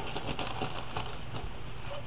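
Rubber gloves being pulled onto the hands: soft rubbery rustling with many small ticks and snaps.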